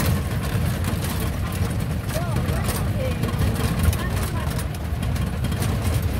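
A commando jeep's engine running steadily while it drives along a dirt road, heard from inside the vehicle, with road noise and frequent small clicks and rattles.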